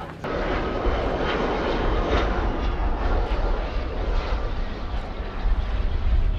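Twin-engine jet airliner landing: steady jet engine noise with a deep rumble, starting abruptly just after the start.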